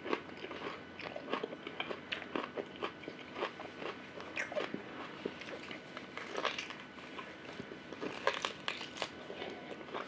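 Biting and chewing beef rib meat off the bone: a steady string of irregular, crisp mouth clicks and crunches.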